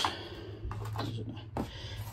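A few faint clicks and light knocks of small parts being handled and picked up, over a steady low hum.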